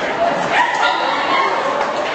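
Indistinct chatter of several voices in a busy hallway, with a brief louder call about half a second in.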